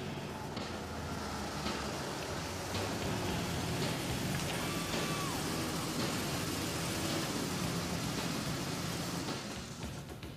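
A BMW 7 Series saloon's engine running at low speed as the car pulls in and idles, under a steady hiss.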